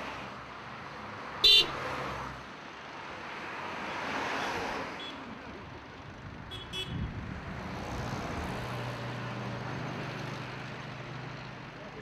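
Street traffic ambience with a steady noisy rumble. A short, loud horn-like toot sounds about a second and a half in, and a few shorter toots follow around the middle.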